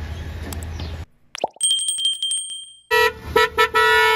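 A steady low engine hum for about the first second, then a sudden drop to near quiet with a few clicks and a thin high tone. Near the end a loud car horn sounds, steady in pitch, with a few brief breaks.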